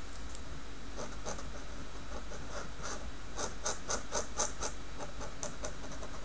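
Tachikawa Maru Pen dip-pen nib scratching across paper in short, quick strokes. They start about a second in and come fastest near the middle, about five a second.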